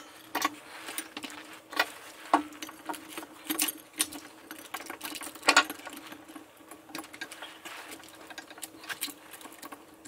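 A yellow C-clamp and a metal heat block clicking and knocking irregularly as they are fitted and clamped under a steel press frame, the loudest knock about five and a half seconds in. A faint steady hum runs underneath.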